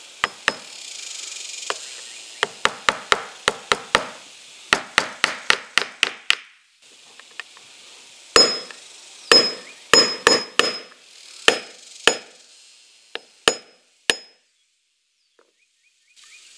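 Hammer driving galvanized twist-shank nails into 2x6 tongue-and-groove wood roof decking: runs of quick blows, several to each nail, with a high metallic ring on some of the later strikes. The hammering stops about two seconds before the end.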